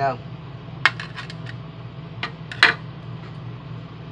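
Metal fork and knife clinking against a metal baking pan as a piece of stuffed pork chop is cut and lifted: about half a dozen sharp clicks, the loudest a little past the middle, over a steady low hum.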